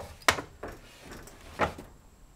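Wooden guitar routing templates handled on the bench: a sharp knock as one is set down, light scraping and shuffling, then a second knock about a second and a half in as another is picked up.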